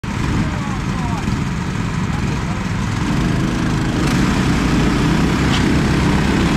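Several single-cylinder Predator clone racing-kart engines running at a steady idle together, with people's voices in the background.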